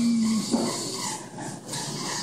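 Claw crane machine and arcade din: a steady low electronic tone in the first half-second, then a short rising note, over the constant hiss of arcade machines.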